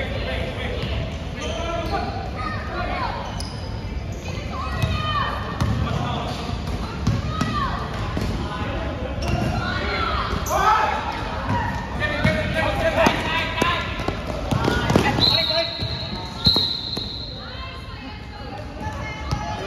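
Basketball being dribbled on a hardwood-style gym court amid players' shouts and sneaker squeaks during live play. Near the end a referee's whistle blows twice in two short blasts, stopping play.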